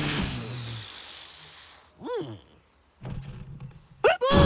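Cartoon sound effects: a noisy burst with falling tones that fades out over the first second or so, then a short rising-and-falling chirp about two seconds in, and a low rumble near the end.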